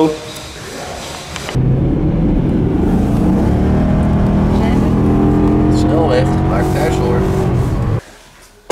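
Car cabin sound at motorway speed from the driver's seat of a Maserati: a steady engine drone with road and tyre noise. It starts abruptly about one and a half seconds in and holds an even pitch.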